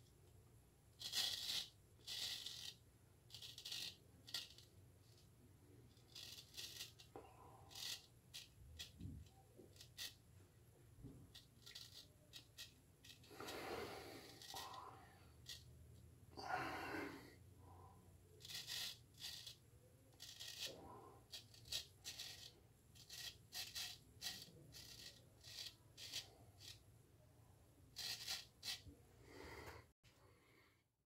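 Straight razor scraping through lathered stubble in many short, faint strokes at an irregular pace, with two longer, lower sounds about halfway through.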